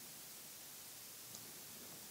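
Quiet room tone: a faint steady hiss, with one tiny tick near the end.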